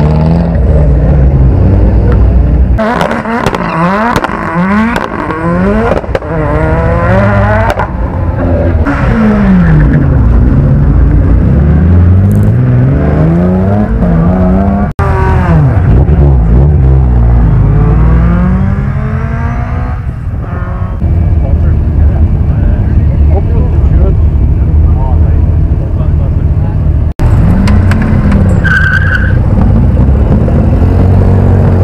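Hillclimb competition cars launching hard from the start line one after another, first a Mitsubishi Lancer Evolution rally car, then a Honda Civic. Each engine revs high and pulls away, its pitch climbing and dropping with every gear change as the car goes away up the hill. A steadier engine sound runs through the second half, with abrupt breaks about 15 s and 27 s in.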